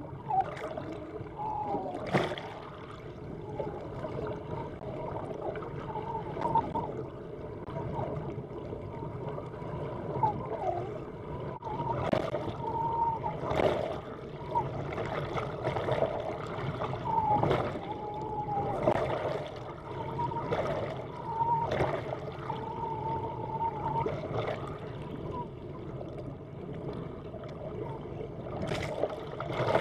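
Underwater water noise beside a boat hull, with many short wavering whistle-like tones and several sharp clicks or splashes scattered through it.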